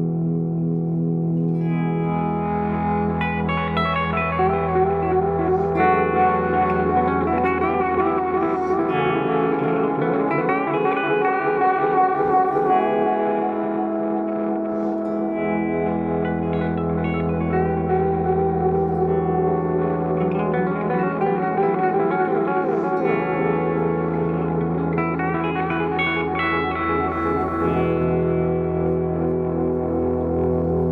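Electric guitar played as volume swells through a DOD FX-90 analog delay with an MN3005 bucket-brigade chip, circa 1987. Notes fade in and their echoes overlap into a sustained, layered wash, some notes wavering in pitch, over a low held note that drops out a few times.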